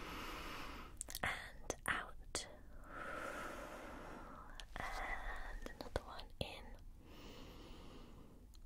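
Slow, breathy in-and-out breaths close to the microphone, a few deep breaths drawn and let out, with a few light clicks from a stethoscope chest piece being handled in between.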